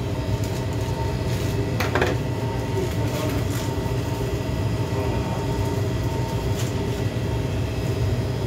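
Steady low hum of shop equipment with a few faint steady high tones, and a few brief rustles about two, three and six and a half seconds in.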